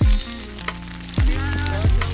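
Hailstones pattering, a steady crackling hiss, under background music with a deep thudding beat that hits at the start and twice more in the second half.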